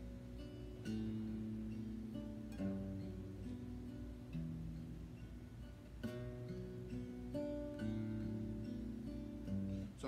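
Steel-string acoustic guitar fingerpicking a chord progression in B minor, the picked notes ringing over one another, with a fresh chord every couple of seconds.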